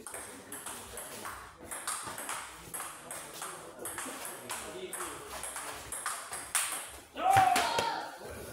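Table tennis rally: the ball clicking sharply off bats and table, about two hits a second. A loud shout breaks in just after seven seconds, as the rally stops.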